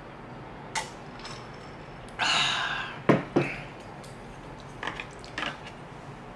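Swallowing from a glass mug, then a breathy exhale about two seconds in, followed by two sharp knocks as the glass mug is set down on the table. Light clicking of wooden chopsticks near the end.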